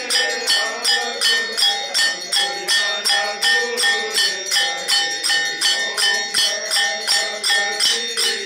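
Temple aarti bell rung over and over in an even rhythm, a little under three strikes a second, its ringing tones carrying on between strikes. A fainter wavering pitch sits underneath.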